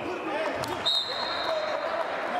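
Arena ambience of voices and crowd chatter; about halfway through, a short thud, then a single high, steady whistle blast held for about a second.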